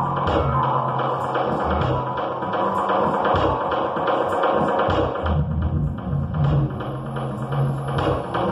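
Live experimental electronic music: a dense, distorted noise texture over low pulsing tones, with a fast regular ticking on top. About five seconds in the noise thins out and the low tones come forward.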